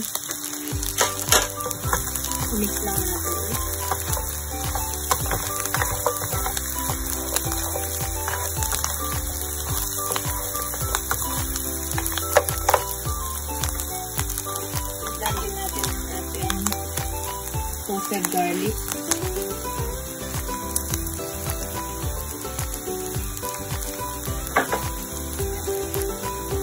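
Pork ribs with chilies and garlic sizzling in hot oil in a nonstick wok as they are stir-fried, with a few sharp knocks of the spatula against the pan. Background music plays throughout.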